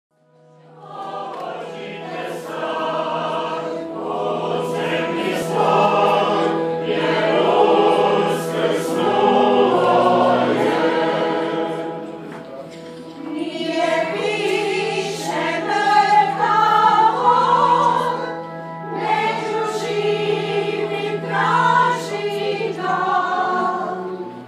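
Choir singing a hymn, with a low note held steadily underneath; it fades in over the first second.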